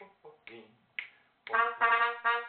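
Three finger snaps about half a second apart count off the beat. A trumpet then comes in about one and a half seconds in with short, separate notes.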